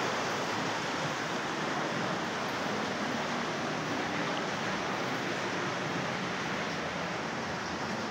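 Steady rushing of a stream running through a narrow rock gorge.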